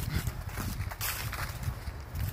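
Footsteps of someone walking across an asphalt lot: a few soft, irregular steps over a low rumble.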